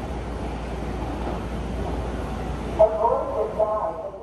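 Steady rumbling noise of the subway, with a voice speaking briefly near the end.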